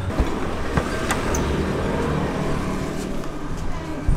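Steady rumble and hiss of a moving road vehicle, with traffic noise.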